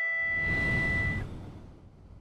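A film soundtrack ending: a high held music note stops about a second in, while a low rushing whoosh swells up and then fades away toward the end.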